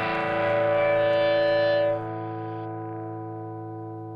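Rock music ending on a distorted electric guitar chord, held and then ringing out, fading slowly after a drop in level about halfway through.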